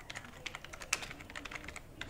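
Computer keyboard typing: a run of irregular light keystrokes, with one sharper key click about a second in.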